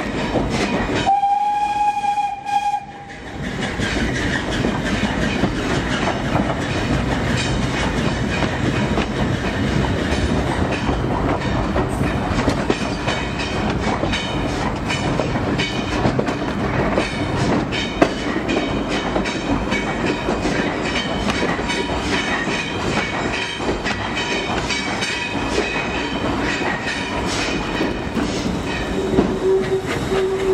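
Steam-hauled preserved train heard from on board as it runs, with a steady rumble and rhythmic wheel clatter over the rail joints. A short pitched whistle sounds about a second in, and a lower steady whistle tone starts near the end.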